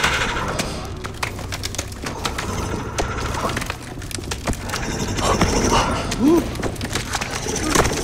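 Sound effects of gnarled wooden creatures moving: dense crackling and splintering wood over a steady low rumble, with a few short gliding creature calls about five to six and a half seconds in.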